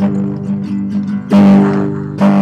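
Acoustic guitar strummed between sung lines, its chords ringing on; a fresh strum about a second and a half in is the loudest.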